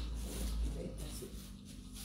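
Quiet room tone with a steady low hum and faint rustling of a thin sheet of rice paper being handled.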